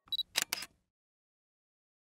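Camera shutter sound effect: a short high beep, then two quick clicks of the shutter, all within the first second.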